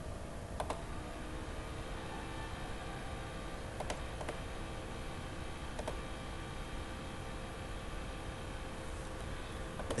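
A handful of isolated clicks from a computer keyboard and mouse, spaced a second or more apart, over a steady background hum.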